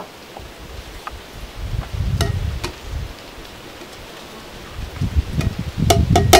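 Gusty low rumble of wind on the microphone, with a few light knocks and clinks as a plastic blender cup is tipped against a glass mason jar to empty blended herbs into it.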